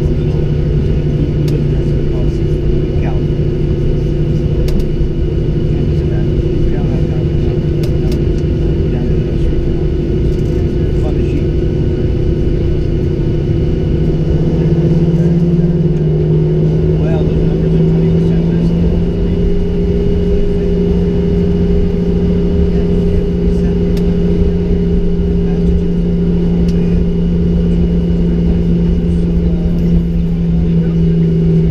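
The Boeing 737-800's CFM56-7B turbofan engines, heard from inside the cabin while the plane taxis: a steady drone with two hums over a low rumble. About halfway through, the engine tone steps up in pitch and grows slightly louder as thrust is added.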